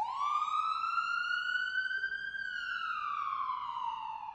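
Ambulance siren sounding one long wail: it rises quickly at the start, climbs slowly to its peak a little past two seconds in, then falls away steadily.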